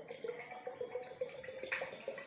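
Cold-pressed coconut oil poured from a plastic bottle into a glass jar of ground spices: a steady liquid pour with one held tone and small irregular ticks.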